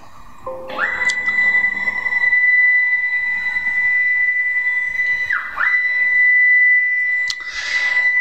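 Stepper motors of a CrossFire CNC plasma table driving the gantry and torch carriage through the break-in program. They give a steady high whine that rises in pitch as the axes speed up just under a second in. About five and a half seconds in, the pitch briefly dips and climbs again as the motion slows to reverse direction.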